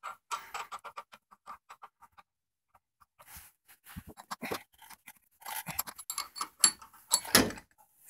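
Faint metal clicks and clinks as a crank puller is threaded into a bicycle-style crank arm and turned with a wrench, with a louder dull knock near the end.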